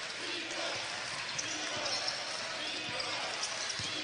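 Courtside sound of a basketball game in an arena: a steady crowd hubbub with a basketball being dribbled on the hardwood floor. A few short high squeaks come in the middle.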